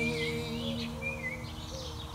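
Small birds chirping over the last acoustic guitar chord as it rings out and fades.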